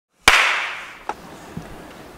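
A single sharp, loud crack about a quarter second in, with a tail that fades away over most of a second, then two faint clicks.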